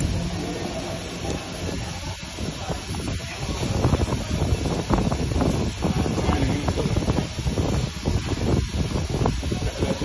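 Steady hissing noise with dense crackling, heaviest at the low end.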